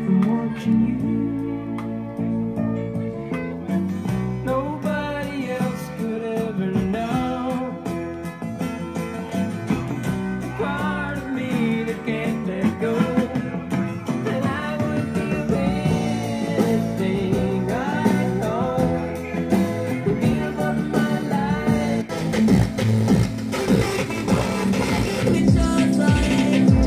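Music with guitar and a singing voice playing through a Sansui G-9000 stereo receiver and its loudspeakers, heard in the room.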